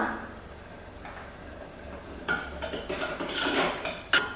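Steel ladle scraping and clinking against the inside of an aluminium pressure cooker as a thick tomato-onion masala is stirred. The clinks come thick and fast from about two seconds in, after a quieter start.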